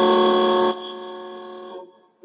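A horn sounded once: a steady, loud held blast of about a second that drops to a quieter fading tail.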